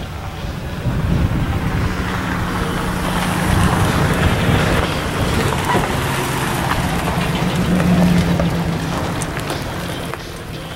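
A car engine running steadily, growing louder about four seconds in and again near the end.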